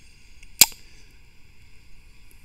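A single sharp click about half a second in, over faint steady background hiss.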